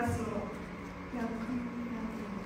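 Speech: a young woman talking into a handheld microphone, with a steady low hum underneath.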